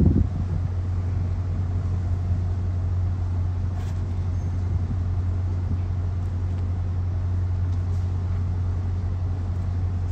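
Diesel locomotive idling with the train standing, a steady low rumble that holds constant.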